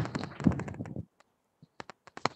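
Computer keyboard typing: a quick run of keystrokes with some duller knocks in the first second, then a few scattered key clicks near the end.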